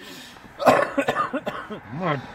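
A man coughing, a rough run of coughs starting about half a second in, brought on by cigarette smoke.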